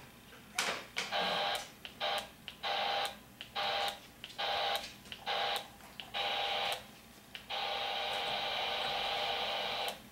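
CB radio receiver hiss from the speaker, with a faint steady whistle in it, cutting in and out with a click about seven times in short bursts under a second long, then holding steady for the last two and a half seconds.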